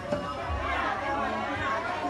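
Background chatter of several people talking in a busy market.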